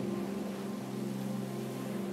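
Soft, steady ambient music drone of sustained low tones, with no change in pitch or rhythm.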